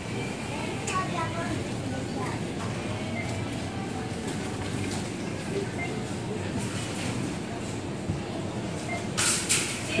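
Supermarket room tone: a steady background hum with faint voices of other shoppers, and a short rustling burst near the end.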